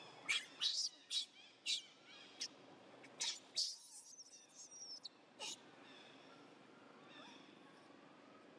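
Infant macaque screaming in short, high-pitched distress cries, about eight in the first five and a half seconds, while its mother pins it down.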